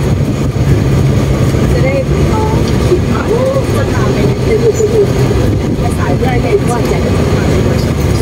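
Steady engine and road noise inside an open-sided passenger vehicle on the move, with people's voices talking over it.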